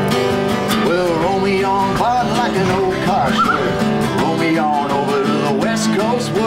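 Strummed acoustic guitar with a man singing a country-style song, a wavering vocal melody over steady chords.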